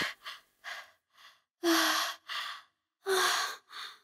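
A person's gasping breaths and sighs: about six short breathy bursts, two of them longer voiced sighs, with short silences between.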